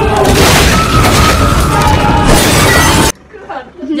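Loud crashing and smashing over music from a police-raid action sequence, cutting off abruptly about three seconds in.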